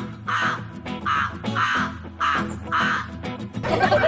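A bird's short, harsh calls repeated about two a second, over background music.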